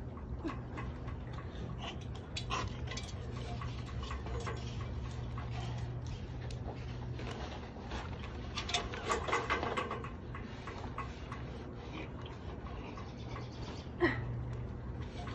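Baby raccoons being pulled from a roof cavity: scattered clicks and rustling of nest material being handled, with a burst of the kits' squealing cries about nine seconds in, over a steady low hum.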